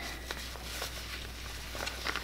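Faint rustling and soft handling noises from the fabric of a pocket cloth diaper and its insert being worked with the fingers, over a low steady hum.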